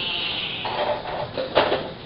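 Metal fork and plastic spatula scraping and clattering against a foil pie tin as a slice of cheesecake is lifted out, with one sharp clank about one and a half seconds in. A brief high-pitched vocal sound at the start.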